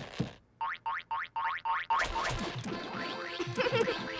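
Cartoon comedy sound effects: a short hit, then about five quick springy boing-like tones, followed about halfway through by lively background music full of sliding notes.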